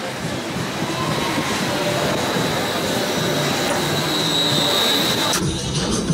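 A steady rushing noise with faint music underneath. About five and a half seconds in, the sound cuts to clearer music.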